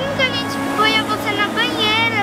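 A girl speaking in a high voice, over a steady low background hum.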